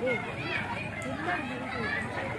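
Background chatter of several people talking at once, with children's voices among them.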